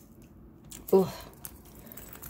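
Faint rustling and soft ticks as a mesh tote bag with faux-leather trim is handled, with a woman's brief spoken "oh" about a second in as the loudest sound.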